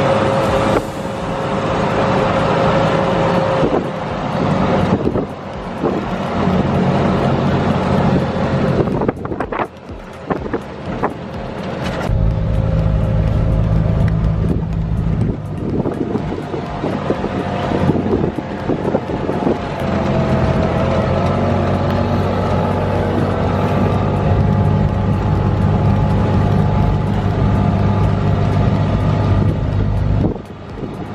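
Four-wheel-drive vehicle's engine pulling hard up a steep road. The engine sound thins out briefly around nine to ten seconds in, then comes back heavier and steady from about twelve seconds.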